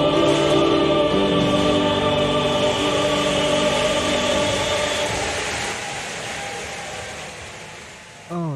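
Choral music with long held chords, fading out over the second half.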